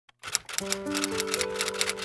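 Typewriter key-click sound effect, a rapid run of sharp clicks, over background music whose held notes come in about half a second in.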